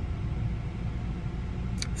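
Steady low rumble inside a car cabin.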